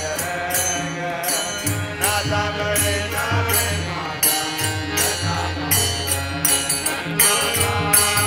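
Men singing a devotional bhajan together in chorus, with a jingling percussion instrument keeping a steady beat.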